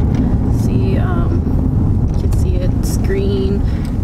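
Steady low road and engine rumble inside a moving vehicle's cabin, with a few brief vocal sounds from the driver.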